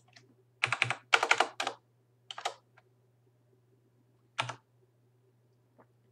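Computer keyboard keys being typed in short bursts: a quick run of keystrokes in the first couple of seconds, then single presses near the middle. A faint steady low hum runs beneath.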